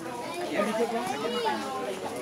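Several people talking around the recorder, not narration, with one high voice whose pitch rises and falls about a second in.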